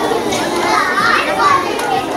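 Many children's voices talking and calling out at once in a hall full of schoolchildren.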